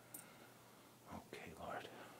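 A man whispering a few quiet words about a second in, after a soft click near the start.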